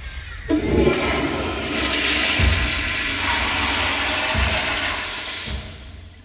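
Commercial flush-valve (flushometer) toilet flushing: a loud rush of water that rises about half a second in and tapers off near the end.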